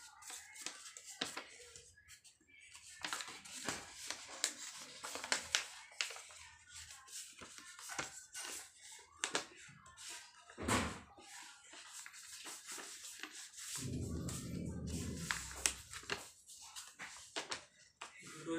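Faint crinkling and scattered soft clicks of a sheet of A4 paper being handled and creased as it is folded, with a low rumble for a couple of seconds near the end.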